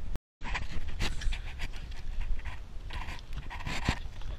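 Working terriers panting in repeated short breaths.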